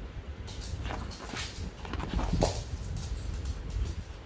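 A Pomeranian giving a few short barks, the loudest about two and a half seconds in.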